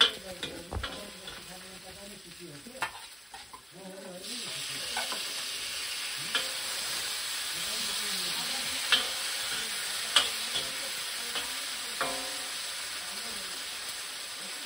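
Vegetables frying in a wok with a metal ladle clinking and scraping against the pan as they are stirred. About four seconds in the sizzle suddenly gets louder and stays loud, as more food goes into the hot oil.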